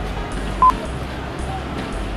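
Airport terminal hall ambience: a steady background hum with distant voices, and a single short electronic beep, the loudest sound, a little over half a second in.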